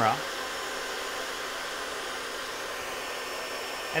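Hair dryer running steadily, a constant rush of air blowing up through a cut-off water bottle top taped to its nozzle and holding a ping pong ball aloft in the airstream.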